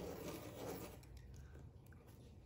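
Pencil scratching faintly on paper as it is drawn around the inside of a roll of tape to trace a circle, dying away after about a second.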